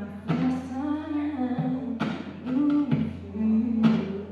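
A woman singing long held notes over a strummed acoustic guitar, with a strum about every two seconds. A steady low hum runs underneath.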